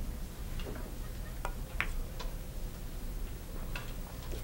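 A pool shot: the cue tip striking the cue ball, then a few sharp clicks of pool balls colliding, the loudest about two seconds in.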